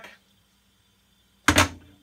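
A stainless steel pot set down on a gas stove's metal burner grate, making one sharp clank about one and a half seconds in, with a short ring-off.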